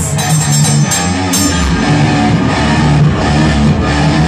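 Live heavy metal band playing an instrumental passage: electric guitars, bass and drum kit, with repeated cymbal crashes.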